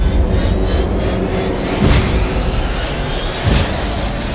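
Loud, deep rumbling roar of a huge ocean wave under dramatic trailer music, with two heavy booming hits, one about two seconds in and one near the end.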